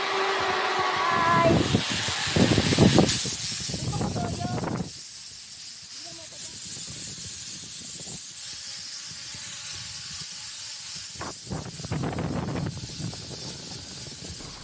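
Wind rushing over the microphone and a zip-line trolley running along its steel cable during a ride. It is loud and gusty for the first few seconds, quieter and steadier in the middle with a faint thin whine, and surges again near the end.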